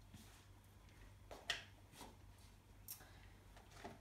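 Near silence, with a few faint, brief taps and rustles as chopped bean sprouts are gathered by hand off a chopping board into a bowl.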